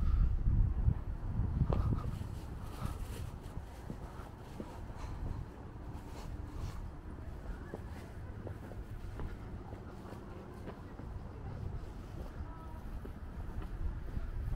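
Outdoor ambience recorded while walking: a low rumble of wind on the microphone, strongest for the first couple of seconds, with faint distant voices and a few light knocks.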